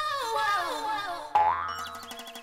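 Comic sound effects added in editing: a tone that steps downward in pitch for about a second, then a sudden louder sting with a rising sweep and a fast, even pulsing.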